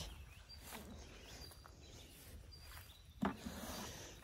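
Faint outdoor garden background noise with no clear single source, broken by one short thump a little after three seconds in.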